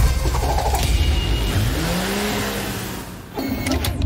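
Cartoon vehicle sound effect: a low engine rumble and whoosh as rescue vehicles speed away, with a tone that swoops up and down partway through. It dies away about three seconds in.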